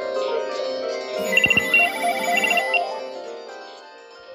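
Several cordless DECT telephone handsets ringing at once, their different electronic ringtone melodies overlapping. A rapid high beeping ring joins about a second in, and the ringing fades near the end.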